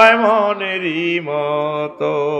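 A man chanting a verse in the melodic style of a Bengali waz sermon. He holds long sung notes that step down to lower pitches partway through the phrase.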